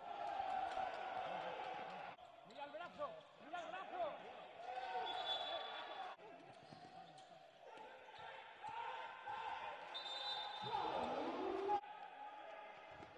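Handball court sound: the ball bouncing on the floor, shoes squeaking and players calling out, with a couple of short high whistle tones. The sound changes abruptly at several edit cuts.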